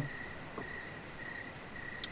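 Pause in speech: faint background hiss with a thin, steady high-pitched tone running through it.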